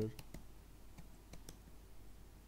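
Computer keyboard typing: a string of light, irregularly spaced key clicks.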